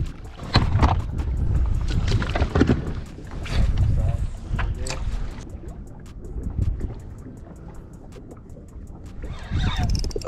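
Wind buffeting the microphone, with a few sharp knocks in the first half; it dies down about halfway through.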